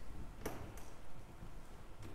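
Quiet room noise with a low rumble, broken by a single sharp click about half a second in and a fainter click just after.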